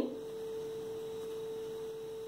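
A steady hum: one even mid-pitched tone that does not change, over faint background hiss.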